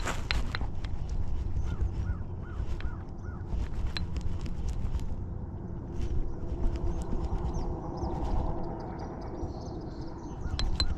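Baitcasting reel being cranked as a lure is retrieved across the water, with small clicks from the reel and rod handling over a low steady rumble. A bird calls four times in quick succession about two seconds in.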